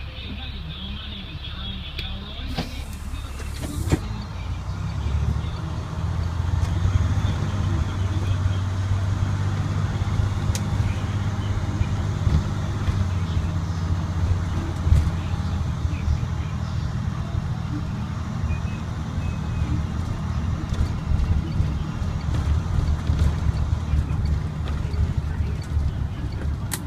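IC CE300 school bus's DT466E diesel engine running as the bus drives, heard from inside the cab, with scattered small rattles and clicks. The engine grows louder about five seconds in and then holds a steady note.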